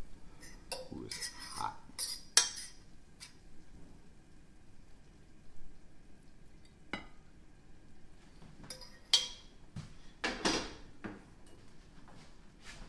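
A metal utensil scraping and clinking against a metal pan while cooked greens are served out onto a plate: a scatter of short scrapes and clinks with quiet gaps, the loudest about two seconds in and again around nine to eleven seconds.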